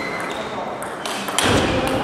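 Table tennis ball clicking sharply off bat and table in a rally, then a louder thump about one and a half seconds in as the point ends. Crowd chatter rings in a large sports hall.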